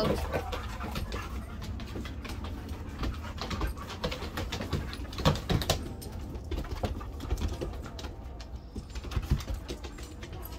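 Two dogs playing on a wooden deck: an irregular patter of claws and paws clicking and tapping on the boards, with a few louder knocks about halfway through and near the end.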